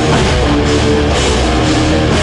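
Live heavy metal band playing loudly: electric guitars holding chords over a drum kit, through a concert PA.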